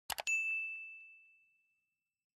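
Two quick mouse-style clicks, then a single bright bell ding that rings out and fades over about a second and a half. It is the notification-bell sound effect of a subscribe-button animation.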